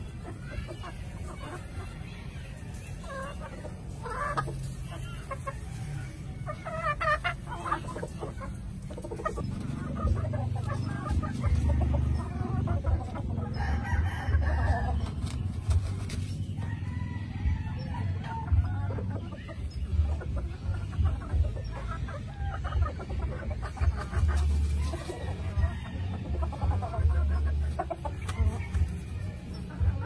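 Gamefowl crowing and clucking, several calls over the stretch, with a low rumble underneath from about ten seconds in.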